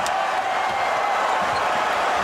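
Arena crowd cheering, an even steady roar, with one brief sharp click right at the start.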